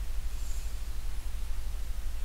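Steady low electrical hum under a background hiss, with a faint brief high scratch about half a second in.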